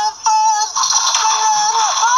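High-pitched singing from a television speaker: a few quick short notes, then one long held note that dips in pitch near the end.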